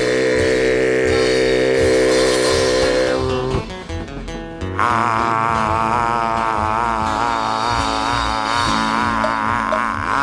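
Live folk band ending a traditional Australian song. A held closing chord with a steady beat lasts about three and a half seconds; after a short break, a long note with wide vibrato is held over a steady low drone.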